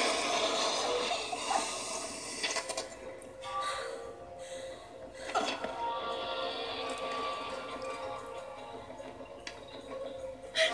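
Soundtrack music from an animated video playing on a screen in the room, after a dense noisy stretch in the first two and a half seconds.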